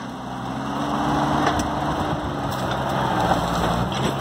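Engine of farm machinery running steadily at a low pitch. Its note rises slightly over the first couple of seconds, then holds.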